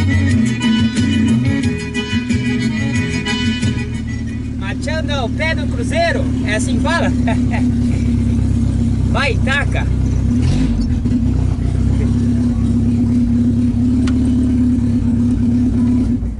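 Background music for about the first four seconds, then the steady drone of a Volkswagen Gol's engine heard from inside the cabin while driving, with a few short vocal sounds over it.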